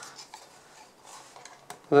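Plastic battery-compartment cover on the back of a handheld oscilloscope being worked open by hand: faint rubbing and handling noise with a few light clicks.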